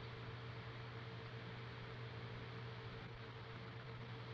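Faint steady hiss with a low, even electrical hum underneath: the background noise of the recording, with no other sound.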